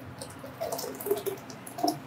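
Blended herb and coconut-milk liquid poured from a glass blender jar into a cloth strainer: a faint, soft trickling and dripping.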